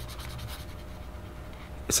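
Faint scratching of a Prismacolor pen tip on paper as short, quick strokes are drawn.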